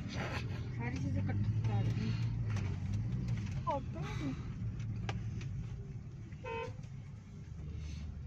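Busy street traffic heard from inside a car: a steady low rumble of road and engine noise, with a short car horn toot about six and a half seconds in.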